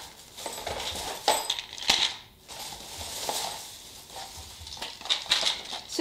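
Crinkling plastic packaging and a few light knocks and clicks as blister-packed items are handled and set down on a table.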